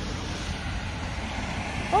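Steady outdoor background rumble with an even hiss and no distinct events; a woman's voice says "oh" right at the end.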